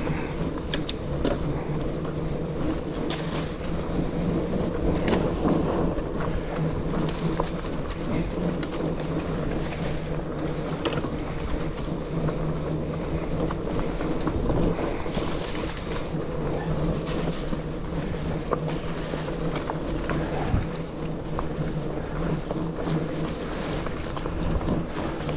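Mountain bike rolling over a leaf-covered dirt trail: a steady rush of tyre and trail noise, crunching leaves, and frequent small clicks and rattles from bumps.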